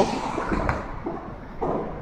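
Street background noise between words: a low rumble of traffic under a steady hiss, with one soft click about two-thirds of a second in.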